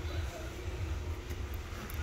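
Steady low hum of a large warehouse store's background noise, with no sudden sounds.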